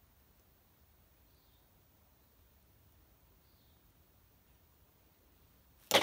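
Near-silent room tone, broken just before the end by one sharp, loud knock.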